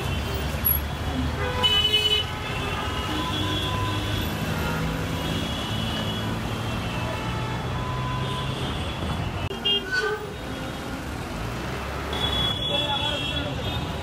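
Busy road traffic with engines and tyres rumbling steadily and car horns tooting several times, loudest about two seconds in and again around ten seconds.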